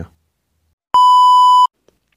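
A single loud electronic beep, a steady pure tone near 1 kHz lasting under a second, about a second in, set in dead silence. It is an edit beep marking a jump cut in the screen recording.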